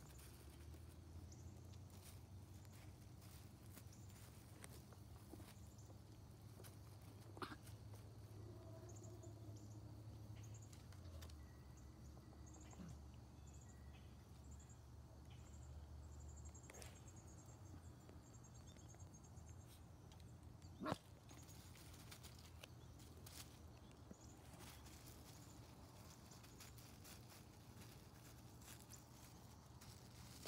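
Near silence: faint outdoor background with a steady low rumble and a few soft knocks, the clearest about 21 seconds in.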